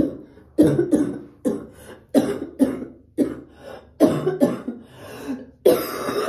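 A woman's coughing fit: a run of about eight harsh coughs in a row, one or two a second. She is still recovering from an illness.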